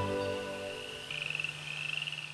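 Soft music fading out, then an animal's rapid pulsed trill starting about a second in.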